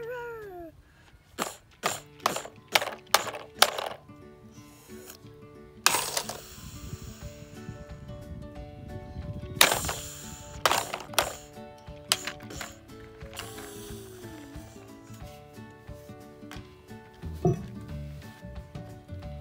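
Hard plastic toys clacking and knocking as they are handled and set down on a stone slab: a quick run of sharp clacks in the first few seconds, then scattered knocks, the loudest about ten seconds in. Background music runs underneath.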